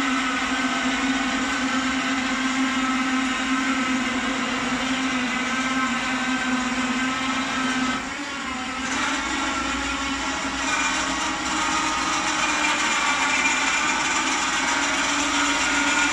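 Caravan wheel mover's electric motors and gearboxes whining steadily as they drive the trailer's tyres, the trailer moving under remote control. About eight seconds in the sound dips briefly and the hum steps up slightly in pitch as the trailer is turned.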